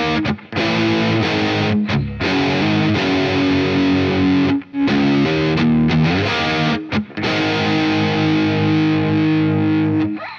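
Distorted semi-hollow electric guitar, tuned down to drop C sharp, playing a heavy low riff of chugging power chords and single notes, broken by several brief stops between phrases.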